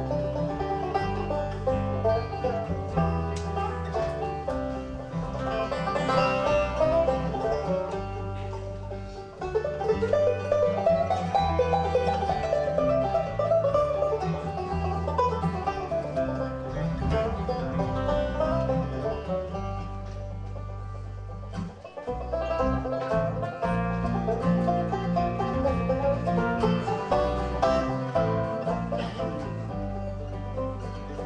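Live bluegrass instrumental: a five-string banjo picking over acoustic guitar and a bass line, with no singing.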